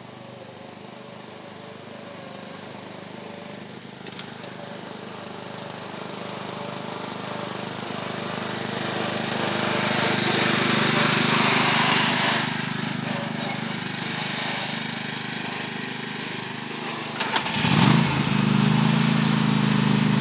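Craftsman riding mower engine running steadily as the tractor drives off across the lawn, growing louder over the first ten seconds. Near the end the engine note rises and gets louder as it is throttled up.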